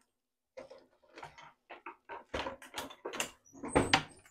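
A run of short knocks and clatters from things being handled off camera in a kitchen, loudest near the end.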